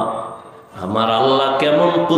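A man's voice chanting a sermon in a drawn-out, sung delivery, with a brief break a little under a second in before the chanting resumes.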